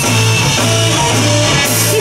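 Live rock band playing an instrumental passage between sung lines: electric guitars, bass guitar and drum kit with steady cymbals.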